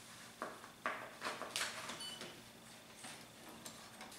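Faint rustling and light taps of paper sheets being slid into the plastic automatic document feeder of a Canon Pixma TR4550 printer: several short handling sounds over the first two and a half seconds.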